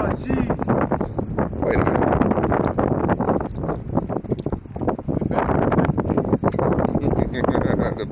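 Wind buffeting the microphone, with indistinct voices of people talking nearby.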